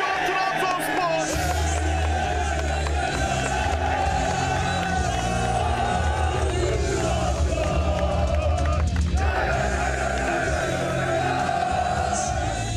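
Music with a steady bass line, played loud, over a group of young men cheering and chanting in celebration. The voices break off briefly about nine seconds in.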